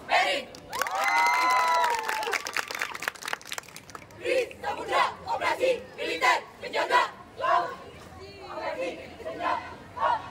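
Drill team shouting in unison: a long drawn-out group yell about a second in, over a rapid run of sharp stamps and slaps, then a series of short shouted chant lines.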